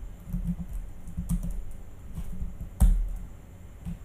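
Typing on a computer keyboard: irregular keystrokes, with one louder key strike about three seconds in.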